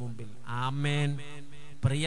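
A man preaching into a microphone, drawing one word out on a long, level pitch.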